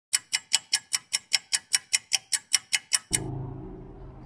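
Rapid, even ticking, about five sharp clicks a second, for about three seconds, that stops abruptly and leaves a steady low background hum.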